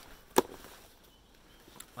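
A single sharp knock about half a second in as the rucksack is handled, then quiet handling rustle.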